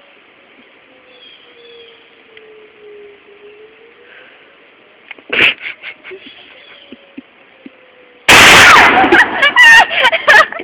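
A single shotgun blast about eight seconds in, loud enough to overload the recording for about half a second. A brief sharp sound comes about five seconds in, and loud voices follow the shot.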